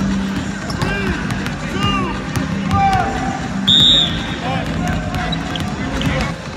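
Several basketballs bouncing on a hardwood court, with many sharp knocks throughout, mixed with short squeaks of sneakers on the floor. A brief shrill squeal a little past halfway is the loudest sound.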